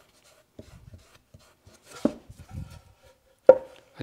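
A small cradled wooden panel being handled on a work table: light scuffs and a few wooden knocks, the sharpest near the end as it is picked up.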